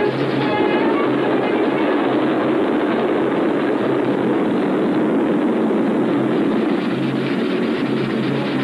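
A train running, a steady loud rumble and rattle on an old film soundtrack, with a few notes of background music at the start.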